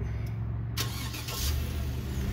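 2016 Chevrolet Suburban's 5.3-litre V8 idling with a steady low hum, heard from the open cabin; a broad rushing noise comes in just under a second in.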